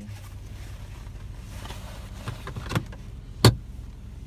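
Steady low hum inside a car's cabin, with a few sharp clicks in the second half, the loudest about three and a half seconds in, from the car door being tried while it is locked.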